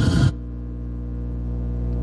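The played video's soundtrack cuts off about a third of a second in, leaving a steady electrical mains hum made of several even tones that slowly grows a little louder.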